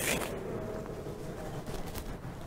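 Brief rustling scrape as a large book is lifted and handled close to a lectern microphone, followed by a low, even rustle of handling and room noise.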